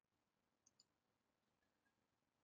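Near silence, with one very faint short click a little before the middle.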